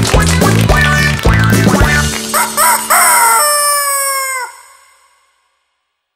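A rooster's crow, cock-a-doodle-doo, as the band ends a song: a few short rising notes, then one long note that falls off sharply. Then the sound fades out to silence.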